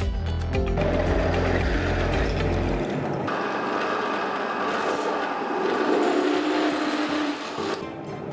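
Bench drill press running, its twist bit cutting through a thin steel plate, under background music.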